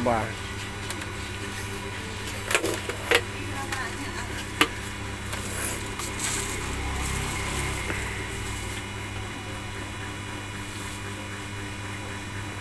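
Canon imageRUNNER iR5000 photocopier running with a steady low hum, with three sharp clicks or knocks from handling of its document feeder and a rustle of paper being loaded into the feeder about six seconds in.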